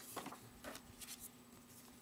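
Faint rustling and scraping of printed card sheets being handled and slid across a table, a few soft scrapes in the first second or so, over a low steady hum.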